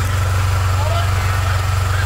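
Vehicle engine idling with a steady low drone, heard from inside the cabin.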